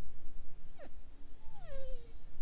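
A dog whining: a quick short whine a little under a second in, then a longer whine that falls steadily in pitch near the end.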